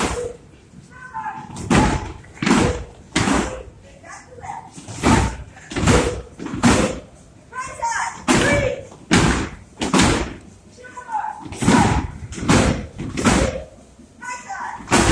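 Gloved punches landing on free-standing heavy punching bags: sharp thuds and slaps about one to two a second in an uneven rhythm, with voices between them.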